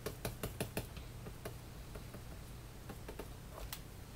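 Light clicks and taps from work at a computer drawing station: a quick run of about eight in the first second, then a few scattered ones, over a low steady hum.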